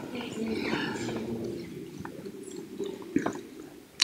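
Quiet lecture-hall room sound with faint indistinct voices from the audience in the first second or so, and a couple of small clicks about two and three seconds in.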